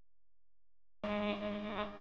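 A single buzzy, steady pitched electronic tone, about a second long, starting abruptly halfway through and cutting off sharply.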